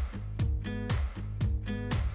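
Background music: a plucked-string tune over a steady beat of about two strikes a second.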